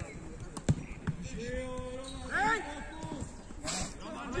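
A football kicked once, a sharp thud under a second in, followed by players shouting to each other.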